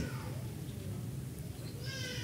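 Quiet room tone in a hall with a faint low hum, and a brief faint high-pitched sound near the end.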